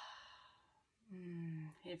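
A woman's long, slow breath out through the mouth, the deliberate exhale of a deep-breathing exercise, fading away in the first half-second. After a moment's quiet, her voice comes in briefly at a steady pitch just before she speaks.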